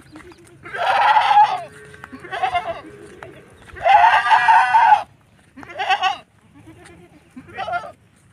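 Totapuri goats bleating as the herd moves: about five loud, drawn-out bleats, the longest about a second, with fainter, lower-pitched bleats in between.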